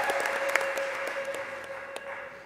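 Applause and hand-clapping fading away at the end of a song, with a last steady held note dying out under it.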